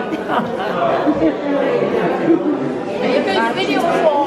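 Several people talking at once: indistinct overlapping chatter.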